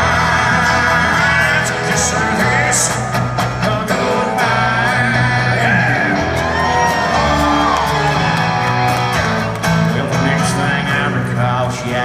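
Live country band playing a song, led by acoustic guitar with keyboard and bass, with a man singing into the microphone.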